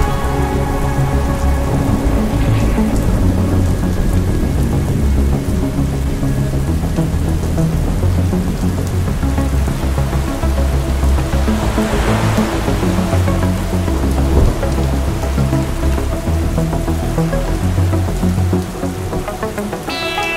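Dark ambient synth music with low, held bass notes, layered over a steady rain-sound recording. A swell of noise rises and falls about twelve seconds in.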